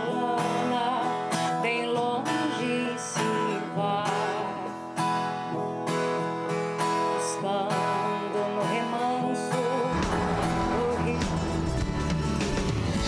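An acoustic guitar strummed in a sertanejo raiz song, with a voice singing along. About ten seconds in, the song gives way to the show's theme music with a deep bass.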